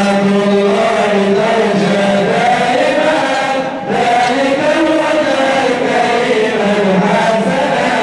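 Male voices chanting an Arabic madih nabawi, a devotional praise of the Prophet, in long held melodic lines over a steady low sustained tone. The singing breaks briefly a little under four seconds in, then carries on.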